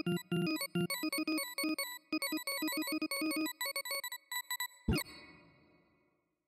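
Sorting-visualizer audio: a fast run of short electronic beeps, each one's pitch set by the value being compared or swapped, jumping about as Less Bogo Sort shuffles 16 numbers. The beeps thin out, and just before five seconds in a quick loud sweep plays as the array comes out sorted, then fades away.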